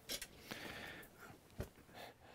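Quiet room tone with faint rustling and a single soft click a little past the middle.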